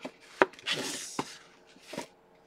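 Hands rummaging in an open cardboard box: a sharp knock about half a second in, then a second or so of rustling, with a few lighter clicks.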